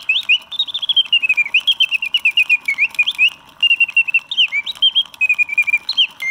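Antique Bontems singing bird box playing its mechanical birdsong: a quick run of chirps, trills and swooping whistles. Its late-1800s movement has been fully serviced.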